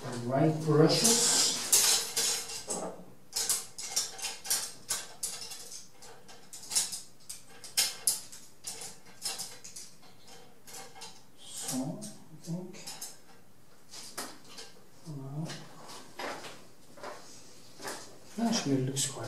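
Scattered light clicks, clinks and taps of small hard painting tools being handled and set down. Brief murmurs of a man's voice come at the start and twice more in the second half.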